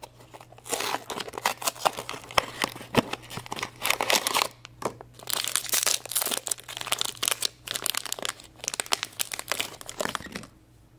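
Foil blind-bag packet of a Good Luck Trolls figure crinkling and tearing as it is handled and pulled open by hand, a dense crackle that stops near the end.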